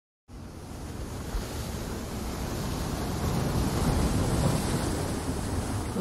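Surf washing up a sandy beach, a steady rushing noise mixed with wind rumbling on the microphone, slowly building in level.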